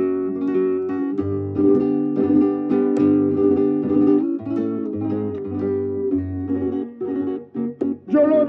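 Flamenco guitar playing a solo passage between sung verses, a run of plucked melody notes over bass notes, from a 1952 record. The playing breaks into a few short stops near the end.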